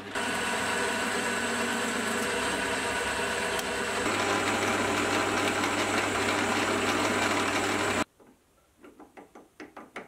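Metal lathe running with its steady gear whine, an insert tool taking light turning cuts on a split-ring part held on a super-glued arbor. The running stops suddenly near the end, followed by a few light taps as the part is handled.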